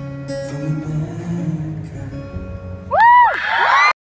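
Acoustic guitar playing soft closing notes. About three seconds in, loud high-pitched screams from the audience burst in over it, several voices overlapping.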